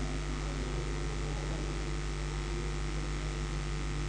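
Steady electrical mains hum with a hiss over it, from the microphone and recording chain.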